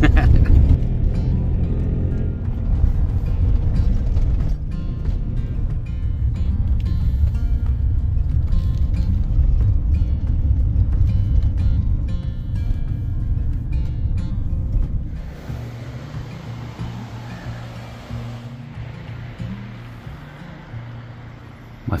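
Heavy low road and engine rumble of the moving van, under background music. About two-thirds of the way through the rumble drops away, leaving quieter music with a light steady hiss.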